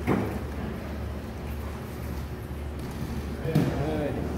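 No-gi grappling match in a gym hall: a sudden smack right at the start over a steady low hum, then brief shouts from spectators near the end as one grappler shoots in for a takedown.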